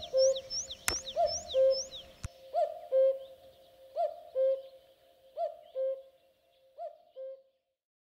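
Common cuckoo calling its two-note 'cuck-oo', the second note lower, five times about a second and a half apart, growing fainter toward the end. Thin high chirps of a smaller bird sound over the first two seconds, with a sharp click about a second in and another just after two seconds.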